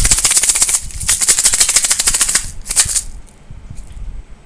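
Plastic bottle shaken as a homemade shaker: a rapid, rhythmic rattle with a short break about a second in. It stops about three seconds in.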